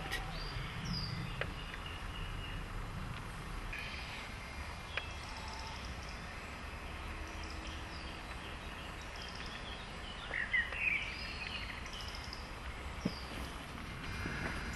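Woodland ambience with faint, scattered bird calls and a brief cluster of bird chirps about ten seconds in, over a low rumble in the first few seconds.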